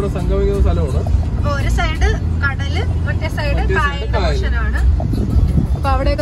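A voice singing over music, with the steady low rumble of a car driving heard from inside the cabin.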